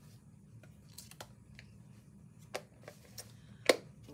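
Scattered light clicks and taps of small craft supplies being handled and sorted through, with one sharper knock near the end, over a low steady room hum.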